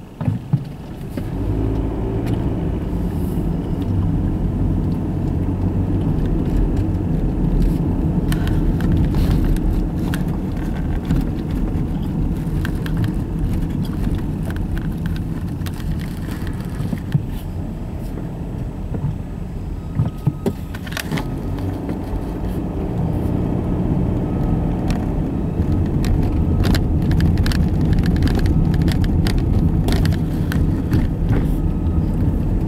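Road noise heard from inside a moving car: a steady low rumble of engine and tyres that swells as the car pulls away about half a second in, with scattered small clicks and rattles.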